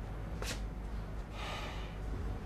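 A person's breathing: a short sharp sniff about half a second in, then a breathy sigh-like exhale about a second and a half in, over a steady low hum.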